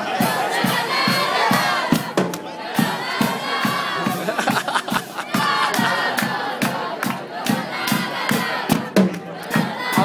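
A group of children's voices shouting together over a steady drum beat of about two to three strokes a second.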